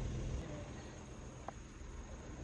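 Insects in a summer rice field chirping steadily as a thin, high, continuous tone, under a low rumble, with one faint tick about one and a half seconds in.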